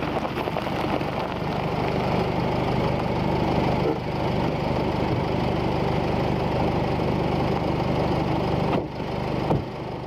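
An engine running steadily with a dense, even rumble that dips and briefly swells again near the end.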